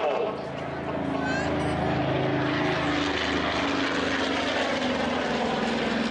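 A propeller aircraft's piston engine running steadily at an even pitch, with voices talking underneath.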